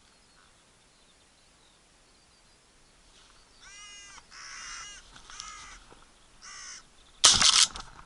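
A carrion crow cawing four or five times, starting about three and a half seconds in, followed near the end by a single very loud shotgun shot from a pump-action Winchester SXP.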